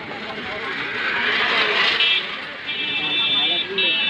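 Street traffic with a vehicle passing close by, then a high-pitched vehicle horn honking: a short toot about two seconds in, a longer blast, and another near the end. Voices murmur underneath.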